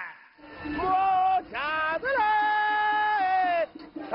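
A man's sung street cry, the traditional call of a Beijing hutong knife grinder offering to sharpen scissors and kitchen knives, drawn out on long held notes with a brief break about a second and a half in.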